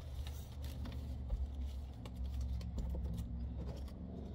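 Small paper cards being handled, with light scattered clicks and rustles, over a steady low rumble.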